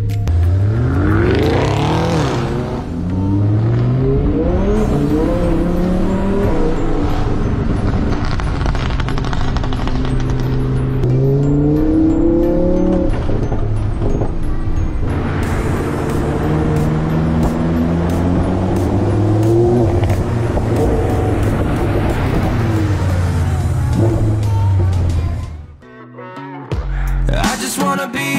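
Lamborghini Huracán LP610-4's V10 with a catless Fi valvetronic exhaust, heard from inside the cabin, accelerating hard through the gears. The engine note climbs in several rising pulls, each broken off by an upshift.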